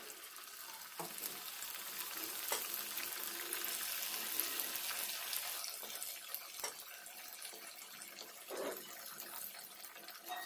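Marinated fish pieces deep-frying in hot oil, a steady sizzling hiss with scattered pops. The sizzle builds over the first few seconds as more pieces go into the oil, then eases a little.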